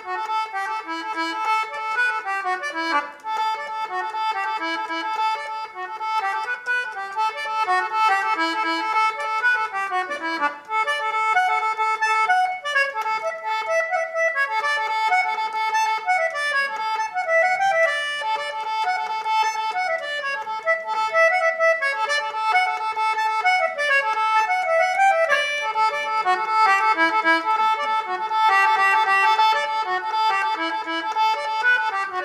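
A 30-key Jackie English concertina being played, its free reeds sounding a tune of moving notes over steady held notes.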